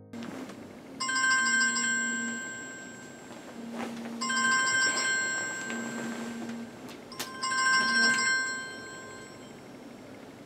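Mobile phone ringtone sounding three times, a bright trilling ring with a low buzz between the rings, stopping near the end as the phone is picked up.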